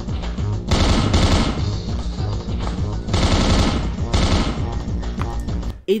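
Rapid animated gunfire sound effects over a driving soundtrack, playing from a web cartoon in bursts, with the loudest volleys about a second in and again past the three-second mark. The whole mix cuts off abruptly just before the end as playback is paused.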